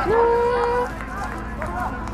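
Several voices shouting and calling out together, as after a goal, with one long held shout in the first second.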